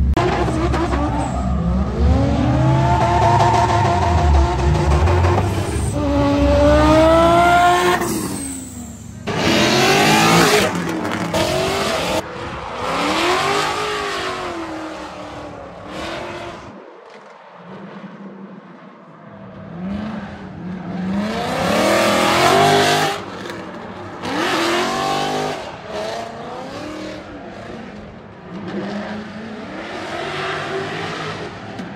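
Drift cars' engines revving up and down in long swells as the cars slide, with loud bursts of tyre squeal. There is a short lull about midway through.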